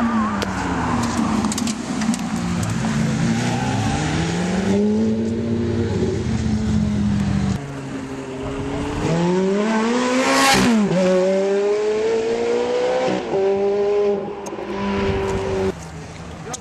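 Ferrari F430's V8 at full throttle, rising in pitch through upshifts. About ten seconds in the car passes close, and the engine note climbs and then drops sharply. It then accelerates away again through more shifts.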